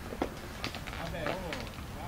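Faint, distant voices with a few light clicks over a low background hiss.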